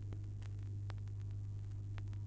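Turntable stylus riding the lead-in groove of a 45 rpm vinyl single on a 1976 Toshiba SM-2100 music system, heard before the music starts: a steady low hum with a few faint surface clicks.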